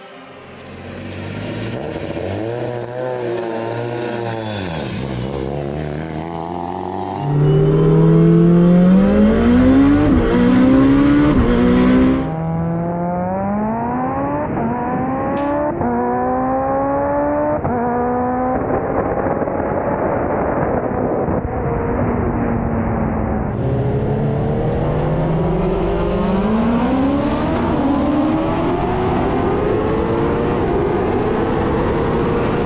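Mitsubishi Lancer Evolution IX's turbocharged 4G63 four-cylinder engine, first revving at the start line, then accelerating hard down the drag strip. The engine pitch climbs in repeated steps, each broken by a quick drop as it shifts up through its sequential gearbox; it is loudest about seven to twelve seconds in.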